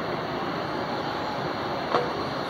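Steady rushing background noise of a large, hard-walled train station hall, heard while riding an escalator. A brief sharp sound comes near the end.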